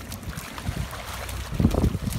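Wind buffeting the microphone as a steady low rumble, with stronger gusts near the end.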